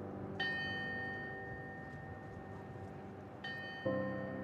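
Large bell tolled slowly in mourning, each strike ringing on and slowly fading: a higher-pitched strike about half a second in and another about three and a half seconds in, then a deeper strike near the end.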